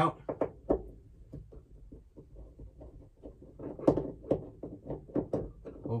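A screwdriver working the mounting screws of a rearview mirror as it is taken down, small irregular clicks and taps of metal and plastic, busiest in the second half.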